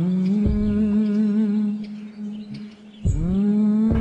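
Two long, low animal calls. Each rises, holds one steady pitch for about two seconds, then falls away; the second begins about three seconds in.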